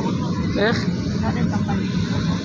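Steady jet airliner cabin noise heard from inside the cabin while the plane taxis: an even drone with a low hum, with brief snatches of nearby voices over it.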